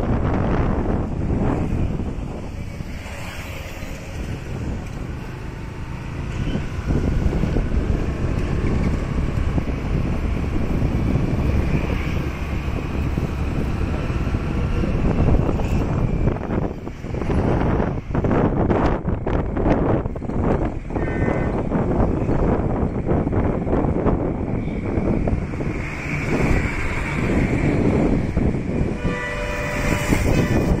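Road and wind noise from a vehicle driving along a town street, with short vehicle horn honks about two-thirds of the way through and again near the end.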